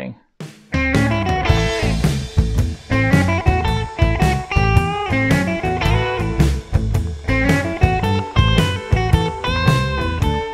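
Electric guitar playing a blues lead in A that mixes minor and major notes, over a backing track with bass and drums. It starts about three-quarters of a second in, after a brief gap.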